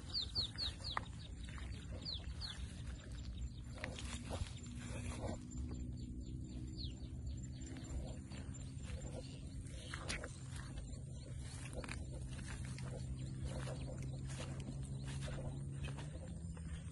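Birds giving quick falling chirps in short runs, mostly in the first few seconds, over footsteps swishing and crunching through dry grass. A low, steady drone runs underneath and grows stronger in the second half.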